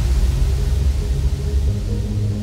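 Uplifting trance track at a transition: a white-noise wash fades away over sustained deep bass synth notes that shift in pitch every second or so.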